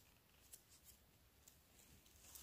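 Near silence, with about four faint, crisp ticks as gloved hands handle freshly picked yellowfoot mushrooms over moss.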